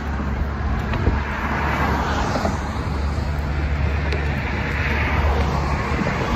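Road traffic passing close by on a bridge roadway: a steady rush of tyres and engines with a low rumble, swelling as a vehicle goes by from about two to five seconds in.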